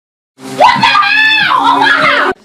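A person screaming in fright at a scare prank: one long, loud scream that starts suddenly about half a second in.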